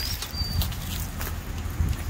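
Wind rumbling on the microphone, with a few light clicks and a brief high chirp about half a second in.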